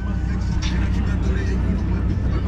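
Background crowd chatter over a steady low rumble of car engines.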